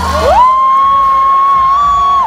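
A long, high-pitched squeal from an audience member near the microphone, gliding up, held on one steady pitch, then falling away at the end, over dance music.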